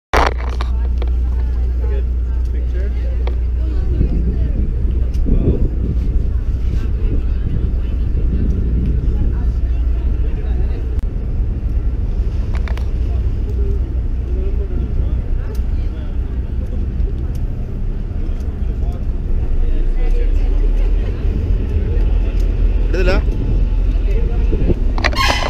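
Steady low rumble with indistinct voices of people in the background.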